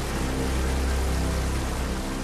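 Steady rush of water falling past a ledge of ice, with background music holding low sustained notes underneath.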